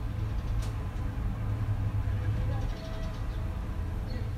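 Steady low rumble of outdoor urban ambience, such as distant road traffic, with a brief click about half a second in.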